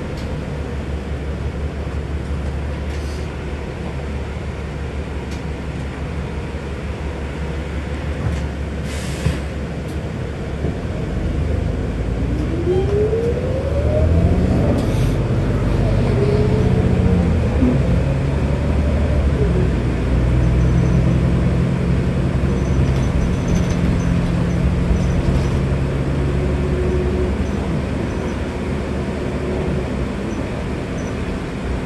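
Interior of a New Flyer Xcelsior XD60 articulated diesel bus on the move: a steady low engine and road rumble. About twelve seconds in it grows louder and the drive's pitch rises twice as the bus picks up speed. Brief hisses come about nine and fifteen seconds in.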